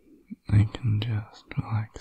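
A man's soft, close-miked whispering voice, breaking into a soft laugh near the end.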